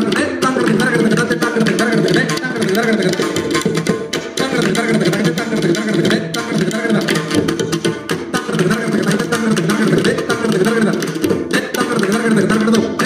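Tabla and mridangam playing together in a fast, continuous rhythm of dense strokes, the tuned drum heads ringing with clear pitch.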